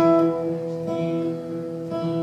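Acoustic guitar played solo between sung lines: a strummed chord rings on, with lighter strums about a second in and near the end.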